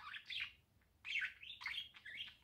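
A bird chirping: a quick run of short high chirps, a pause of about half a second, then another run.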